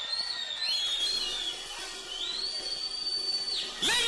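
Shrill whistling from the congregation: several high whistles that rise, hold and drop away, one overlapping the next. The longest is held for over a second in the second half.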